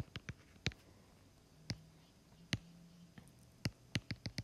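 Scattered sharp taps of a stylus on a tablet screen, about six of them spread over a few seconds.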